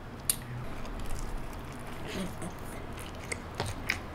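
A bite into a crispy fried chicken drumstick, with one sharp crunch of the coating about a quarter-second in, followed by close-up chewing with small scattered crackles.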